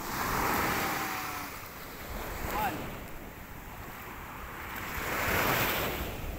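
Small waves breaking and washing up a sand beach: two swells of surf, one about half a second in and one near the end, with quieter wash between.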